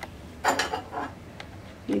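A spatula knocking and scraping against a tawa as a cooked dosa is lifted off: a cluster of short clicks about half a second in, then a few lighter taps.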